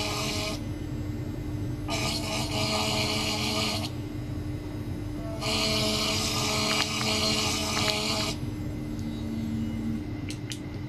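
Ultrasonic probe driven by a function generator and vibrating a clamped metal tube, giving a high buzzing hiss with a whine. It comes in three bursts of about two to three seconds, separated by quieter gaps of about a second and a half, over a steady low hum.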